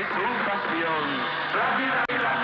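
Voices from an archival radio broadcast recording, thin-sounding and narrow in range.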